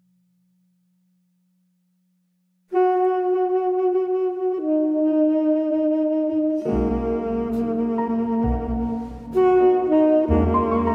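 Silence between album tracks, then about three seconds in a big-band intro begins with long held horn notes, stepping down in pitch. A couple of seconds later the fuller band comes in with bass under the horns.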